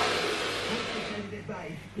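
A hand spray bottle misting the girl's hair: a hiss that fades away over about a second and a half, with faint voices near the end.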